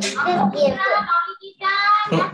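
A child's voice in sing-song, with pitch that bends and holds over several held notes, heard through video-call audio.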